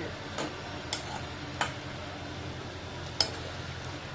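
A few sharp clinks of steel cooking utensils, a spoon and lid against steel pots, over a steady low hum. The loudest clink comes near the end.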